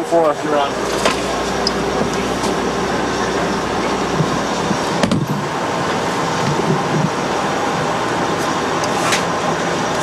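Steady, even rushing of ventilation and machinery noise, heavy with tape hiss, with a low hum underneath that cuts off with a click about five seconds in.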